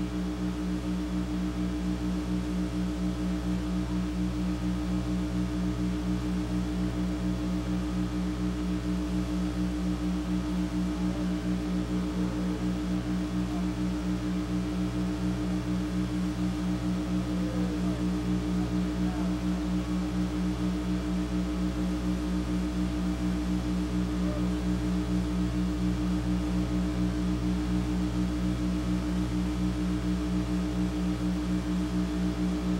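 Steady low electrical hum with buzzy overtones and a slight regular flutter, unchanging throughout.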